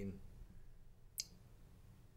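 A single short, sharp click a little over a second in, against a quiet room.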